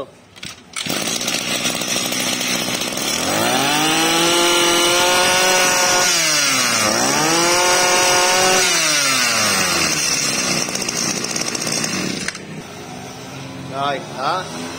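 Yanmar brush cutter's small two-stroke engine starting about a second in and running, revved up to high speed twice with the pitch rising and falling, then settling back to idle near the end.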